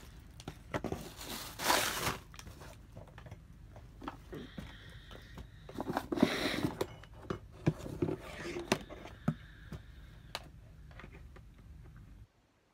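Rustling, crinkling and handling noise close to the microphone, with scattered clicks and knocks, as someone moves about in the dark.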